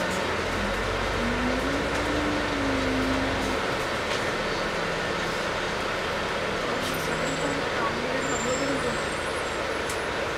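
Volvo Olympian double-decker bus driving, heard from inside on the upper deck: a steady running rumble with a whine that rises and then falls over the first few seconds, and a low drone that drops away after about three and a half seconds.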